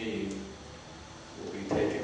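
A man's speaking voice: a phrase tails off, a pause of about a second, then talk resumes with a sudden louder onset near the end.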